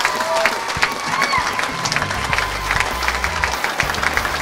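Audience applauding and cheering: dense clapping throughout.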